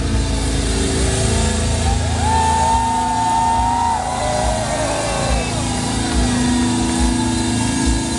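A metal band playing loud, dense live music with drums and distorted guitars, recorded from the crowd in front of the stage. A high held note bends in and out from about two to four seconds in.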